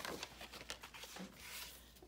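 Faint rustling and light ticks of patterned paper being handled and lifted off a paper trimmer, with a couple of sharper clicks near the start.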